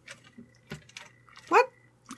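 A few soft plastic clicks from a Jurassic World Dino Rivals Concavenator action figure as its back button is pressed to work the tail-swing action.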